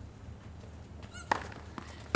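Tennis ball struck with a racket: one sharp pock a little over a second in, with a brief high squeak just before it and a fainter knock near the end, over a low steady hum.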